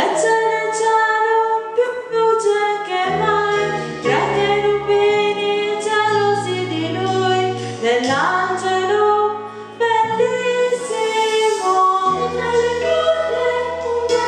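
A woman singing a song with long held notes over instrumental accompaniment with a steady bass line.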